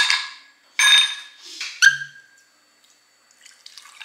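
Ice cubes dropping into a glass tumbler: three clinks about a second apart, each ringing briefly.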